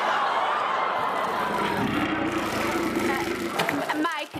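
Live studio audience reacting loudly in disgust and laughter to a gross-out gag, with a low rumble underneath from about a second in until near the end.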